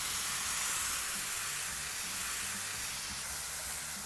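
Coconut milk hitting hot fat and beef in a wok over a gas flame, sizzling with a steady hiss that eases slightly toward the end.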